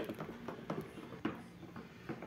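Wooden spoon stirring thick soap batter of used cooking oil and caustic soda in a plastic bucket, faint, with about three soft knocks of the spoon against the bucket. The batter has saponified into a thick cream.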